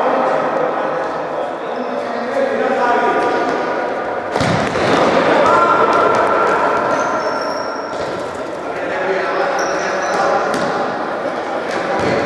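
Futsal game in an echoing sports hall: players and onlookers shouting, and one hard thump of the ball being struck about four seconds in. Short high squeaks of shoes on the court floor come through several times in the second half.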